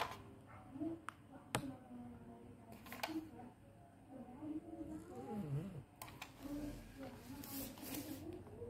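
Faint voices talking in the background, with a few sharp clicks scattered through, the loudest about one and a half seconds in.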